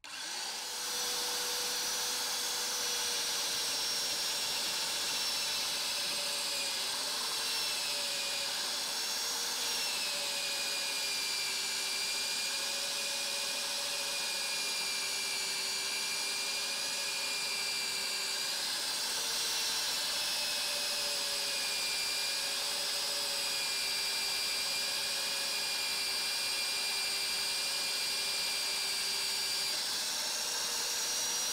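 VEVOR MD40 1100 W magnetic drill running a 12 mm annular cutter through about 10 mm thick steel plate. The motor starts right at the beginning and runs steadily with a high whine, its pitch dipping slightly a few times as the cutter bites.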